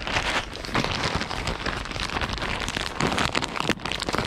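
Plastic bag of bird feed being handled and shaken out: a continuous crackly rustle with many small clicks and crinkles.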